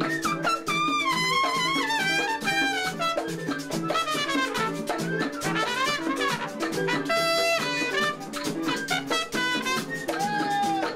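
Trumpet playing a winding, bending melodic line over a steady Latin percussion rhythm and lower accompanying notes, in a live plena-style parranda.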